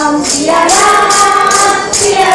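A group singing a Hindu devotional song (bhajan/kirtan) together in long held notes, with jingling hand percussion keeping a steady beat of about three strokes a second.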